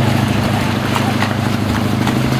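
A motorboat's engine idling steadily with a low hum, with a few short knocks as people step onto the boat's deck.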